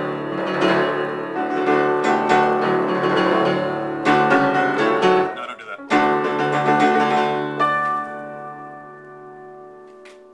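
Upright piano played with loud, full two-handed chords, broken off briefly about six seconds in, then a few more chords and a final chord left to ring and fade away over the last two seconds.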